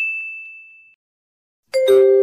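Quiz sound effects: a bright, high bell-like ding that fades out over the first second, marking the correct answer. Near the end, a lower two-note chime steps down in pitch.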